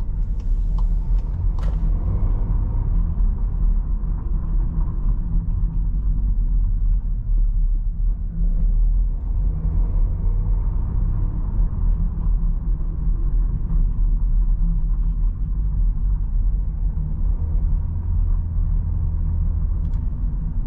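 Steady in-cabin drive noise of a Seat Ateca's 1.5-litre four-cylinder petrol engine with road and tyre rumble, cruising at low city speed. A few light ticks in the first two seconds.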